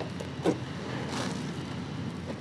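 Wet concrete crumbling into a tub of watery cement: a sharp splash about half a second in, then a softer gritty crumble a little later, over a steady low hum.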